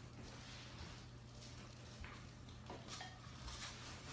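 Faint soft clicks and taps of a spoon in a bowl and of hands working at a countertop, over a low steady hum.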